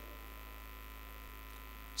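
Low, steady electrical hum, with nothing else in the pause between spoken phrases.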